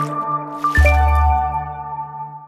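Short musical logo sting with water-drop sound effects: held chords, then a new chord with a deep bass hit about three quarters of a second in that rings on and fades away.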